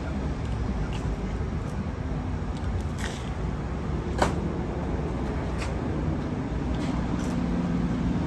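Steady low rumble of road traffic, with a few faint sharp clicks in the middle.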